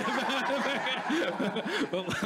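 Several people laughing together at a joke, a mix of chuckles and short laughs overlapping one another.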